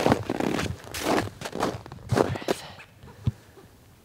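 Footsteps in snow, about two steps a second, growing fainter and stopping a little past the middle. A single sharp click comes shortly before the end.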